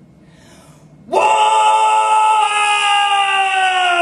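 A performer's voice holding one long, loud cry into a microphone, starting about a second in and kept steady in pitch for about three seconds before it drops away at the end.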